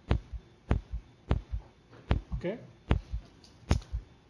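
A steady run of knocks, one about every 0.7 seconds, each followed closely by a softer second knock. A man says "okay" a little over halfway through.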